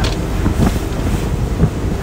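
Wind buffeting the microphone over a bowrider running at cruise on plane. Its 8.2-litre MerCruiser V8 runs steadily at about 3,000 rpm, and choppy water rushes along the hull.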